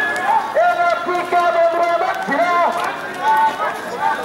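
Marchers' voices chanting protest slogans, a repeated rhythmic chant with drawn-out syllables.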